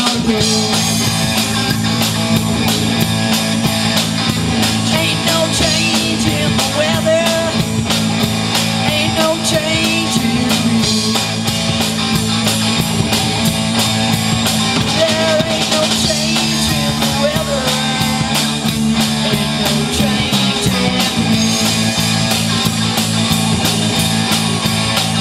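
Live rock band playing, a drum kit keeping a steady, even beat under sustained bass and guitar.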